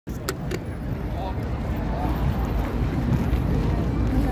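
Busy city street ambience: a steady low rumble of traffic under indistinct voices of a crowd, with two sharp clicks near the start.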